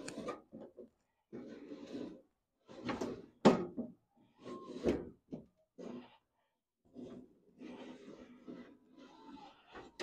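Car door window regulator and glass being cranked down and back up inside a 1967 Pontiac Firebird door, the nylon roller and glass sliding in channels freshly greased with white lithium grease, giving a series of irregular scraping and rubbing sounds.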